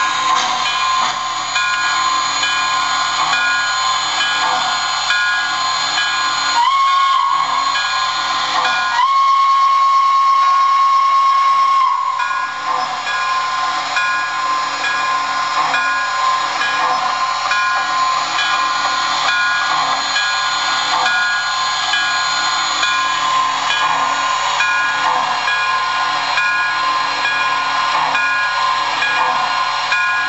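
MTH Chapelon Pacific O-gauge model steam locomotive's onboard sound system playing a steady steam hiss, with two whistle blasts about seven seconds in: a short one whose pitch rises at the start, then a longer one of about three seconds.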